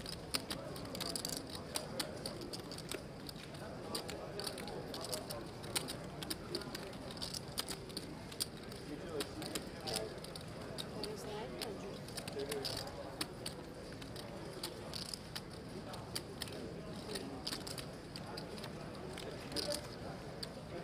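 Poker chips clicking and clacking irregularly as players handle and shuffle them at the table, over a steady murmur of background voices.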